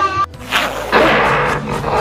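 A rough animal roar starting about half a second in and holding on, over background music.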